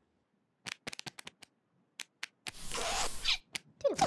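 Animated-show sound effects: a series of sharp clicks and taps, a rustling whoosh lasting about a second from around two and a half seconds in, then a short falling vocal sound near the end.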